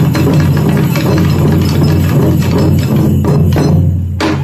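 Taiko drum ensemble: several taiko drums beaten with bachi sticks in a dense, continuous rhythm, with hand-held percussion played along.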